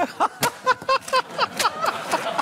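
Men laughing and calling out over one another, in short pulses at about four a second, with a sharp knock or clap about half a second in.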